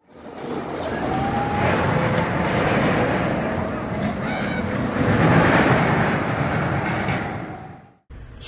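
Steel roller coaster train running along its track with a steady rumble, fading in over the first second and out near the end, with faint voices mixed in.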